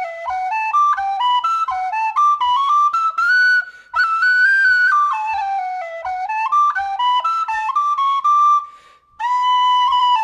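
D tin whistle playing a jig melody in quick runs of notes, with two brief breaks for breath, about four seconds in and just before nine seconds. Soft low thuds keep a regular beat underneath.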